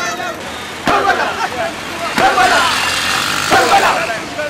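Crowd of marchers chanting in unison: three loud shouted phrases about a second and a quarter apart, each starting sharply, over a steady background hum of the moving crowd.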